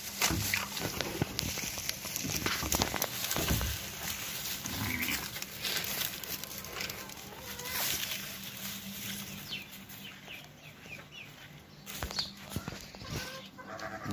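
Goats moving and feeding in straw, with scattered rustles and knocks and a few faint, short animal calls.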